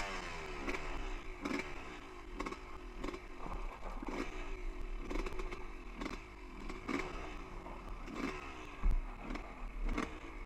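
Two-stroke dirt bike engine blipped in short bursts over and over, the revs falling away between them, with knocks and clatter as the bike works over rocky singletrack and a sharper thump near the end.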